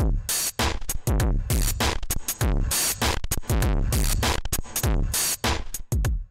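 Electronic drum loop, deep kicks with a falling pitch about twice a second between snare and hi-hat hits, played through Baby Audio's TAIP tape-emulation plug-in. Its drive is being turned down from heavy tape saturation to light.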